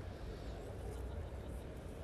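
Faint, steady outdoor background noise: a low hum under a soft hiss, with no distinct event.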